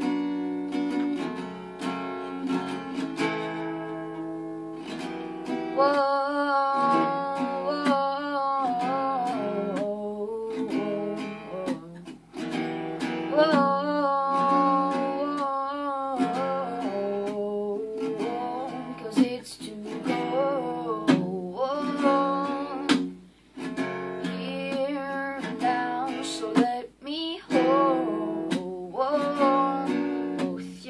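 Taylor acoustic guitar strummed steadily with a capo on the neck, with a boy's voice singing long, wordless "whoa" lines over it in several phrases.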